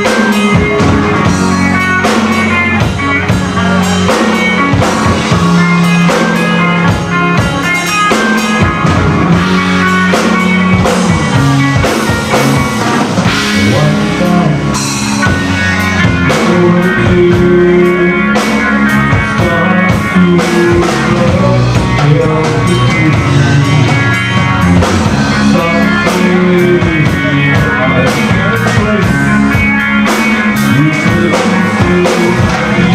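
A rock band playing live on two electric guitars, bass guitar and a drum kit, loud and steady.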